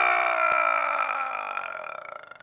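A man's voice holding one long, wordless vocal note that slides slowly down in pitch and fades away.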